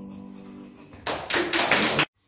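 The last violin-and-piano chord fades out, then applause breaks out about a second in and stops abruptly at the end.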